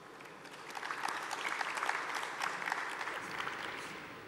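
Audience applause, building about half a second in and dying away near the end.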